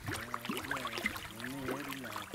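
Fish splashing at the surface of a pond as they take floating feed pellets, with many small irregular splashes over a steady low hum.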